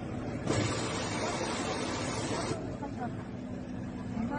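Voices of onlookers at a ship launch, with a rush of noise that lasts about two seconds and cuts off suddenly.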